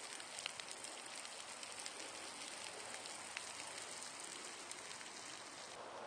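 Water spraying from a garden-hose-fed shower head and falling as spray: a faint, steady hiss with scattered small drop ticks.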